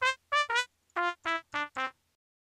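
Sampled open trumpet from the First Call Horns library in Kontakt playing seven short, separate notes, the last four lower than the first three.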